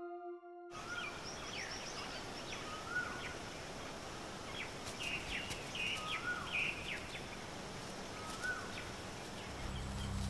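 Outdoor nature ambience: a steady hiss of background with birds calling, one repeating a short rising-then-falling whistle every couple of seconds among higher chirps. A ringing music tone cuts off in the first second, and a low musical drone comes in near the end.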